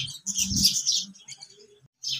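Small birds chirping in short high bursts over the first second, then fading out.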